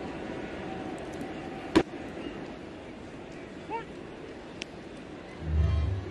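Ballpark crowd murmur, with one sharp pop about two seconds in, a pitch smacking into the catcher's mitt for a strike. Near the end a low rumbling whoosh rises, a broadcast replay transition effect.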